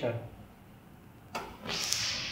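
A short clack about one and a half seconds in as the 12 V power supply is connected to the Arduino keypad lock, followed by a steady hiss that begins as the unit powers on.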